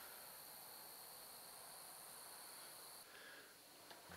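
Near silence: a faint steady high-pitched hiss with a thin steady tone running under it, the highest part of the hiss cutting off about three seconds in.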